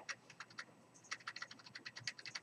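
Faint computer keyboard keystrokes: a quick, irregular run of clicks that grows denser in the second half, as keys are pressed repeatedly to cycle through open windows.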